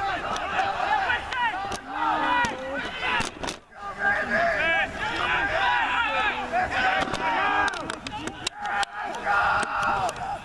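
Several voices of rugby players and sideline spectators shouting and calling over one another, with a few sharp clicks.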